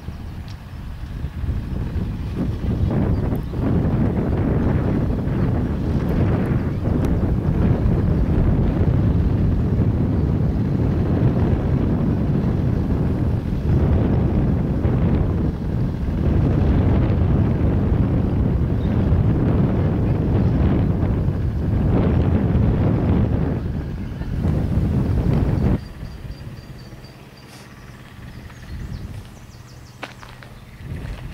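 Wind buffeting the camcorder's microphone: a heavy, gusting low rumble that swells and eases. It drops away suddenly a few seconds before the end to a much quieter background.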